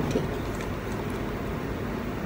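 Steady background noise of the recording room, an even hiss with a low hum underneath and no distinct event.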